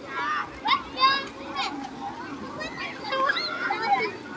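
Crowd of bathers, many of them children, shouting and calling out over one another while playing in the sea, with a few loud shrieks about a second in.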